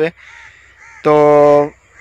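A man's voice holding one drawn-out word at a steady pitch for about two-thirds of a second, about a second in, with faint short bird calls in the background.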